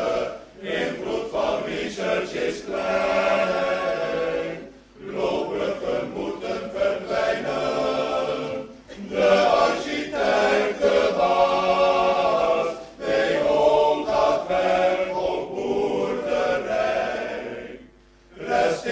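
A choir singing a song in Dutch, in about four phrases of roughly four seconds each, with brief pauses between them.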